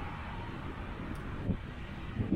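Road traffic passing on the adjacent roadway, heard as a steady rushing noise mixed with wind on the bike-mounted microphone, with one brief low thump about a second and a half in.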